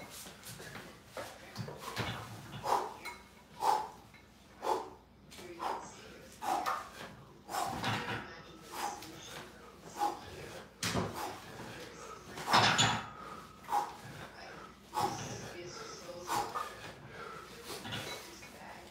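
A man breathing hard and grunting in short bursts, about one a second, through a set of weighted pull-ups with a 50-pound plate on a chain dip belt. Light clanks from the belt's chain and plate come in between.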